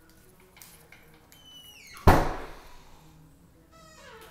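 An interior door swinging: a squeak falling in pitch, then a loud thunk just after two seconds in that rings briefly, and another falling squeak near the end.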